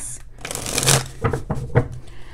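A deck of oracle cards being shuffled by hand: a short rush of sliding cards, then a few sharp flicks and taps of the cards.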